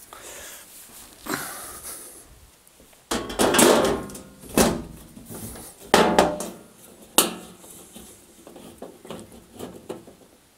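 Top lid of a tumble dryer being set down on the dryer's sheet-metal cabinet and pushed into place: a series of knocks, clatters and scrapes, the loudest about three to four seconds in.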